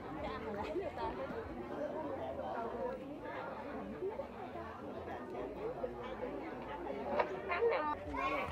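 Background chatter: several people talking quietly at once, with no single clear voice in front.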